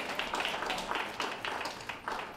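Audience applauding, a dense run of irregular hand claps.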